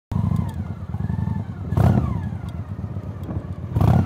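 Cruiser motorcycle engine running with a rapid low throb, revved in two brief surges, about two seconds in and again near the end.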